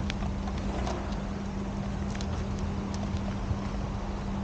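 Footsteps on paving stones, heard as a few scattered sharp clicks over a steady low rumble and a constant low hum.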